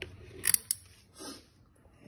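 Long metal feeding tongs clicking and scraping as they grip a thawed rat in a plastic bucket: a sharp click at the start, two quick clicks about half a second in, then a softer scrape.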